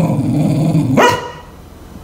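Cocker spaniel growling low and steadily for about a second, then giving one sharp bark. It is a play growl and bark: the dog is down in a play bow.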